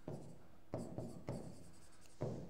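A stylus writing a word by hand on an interactive touchscreen board. Several faint, short scratching strokes follow one another quickly.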